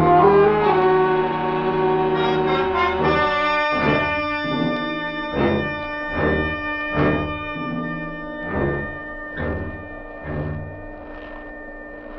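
Orchestral musical bridge between scenes of a radio drama: a loud held brass chord, then a slow steady beat of low drum strokes under sustained brass, fading toward the end.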